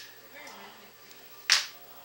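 One sharp snap about one and a half seconds in, over faint television sound with voices and music.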